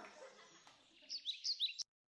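A small bird chirping: a quick run of short, high, falling chirps about halfway through, cut off suddenly just before the end.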